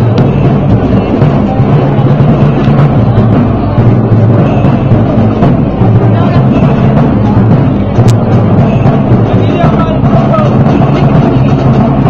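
Parade band playing Moorish march music, loud, with a heavy bass drum and percussion underneath.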